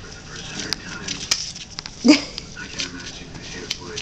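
Puppies scuffling on newspaper, with many small clicks and rustles from paws on paper, and one short yelp from a puppy about two seconds in.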